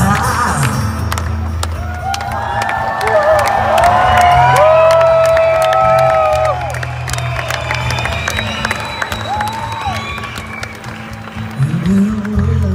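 Live band music: a violin playing long held notes that slide at their ends, over acoustic guitar and a steady bass. The audience claps and cheers along.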